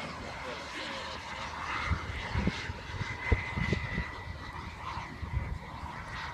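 Radio-controlled model HondaJet jet flying past at a distance, a steady high whine over a hiss. Irregular low thumps of wind on the microphone come through, the strongest about three seconds in.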